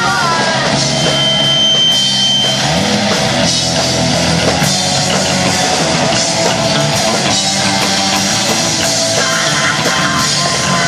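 Live rock band playing: electric guitars and a drum kit together, loud and steady.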